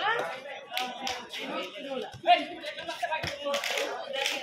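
Voices calling out, broken by scattered sharp hand claps; the loudest clap comes about halfway through, and a quick run of claps near the end.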